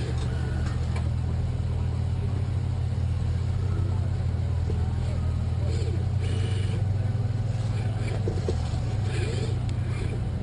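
A steady, low engine drone of running machinery, unchanging in pitch and level, with a few faint short sounds above it.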